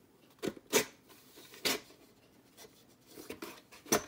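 Hands pulling the gear block out of a street light's metal housing: a few short knocks and scrapes, two of them in the first second, then light clicks near the end.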